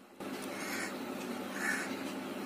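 A bird calling in short repeated calls, about one a second, over a steady outdoor background hiss.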